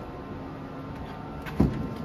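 A Tesla Supercharger connector is pushed into a Model Y's charge port and seats with a single sharp clunk about one and a half seconds in, over a steady low background hum.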